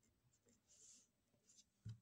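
Faint scratching of a pen writing on a workbook page in short strokes, with a brief soft thump near the end.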